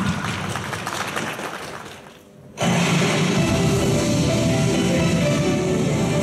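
Hand clapping from the audience fading out, then the gymnast's routine music starts abruptly about two and a half seconds in and plays on steadily.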